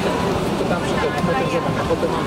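Indistinct chatter of passengers talking in an airliner cabin, over steady cabin background noise with a faint constant hum.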